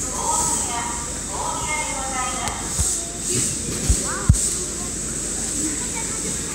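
Voices talking for the first couple of seconds, followed by a few dull thumps in the second half, over a steady high hiss.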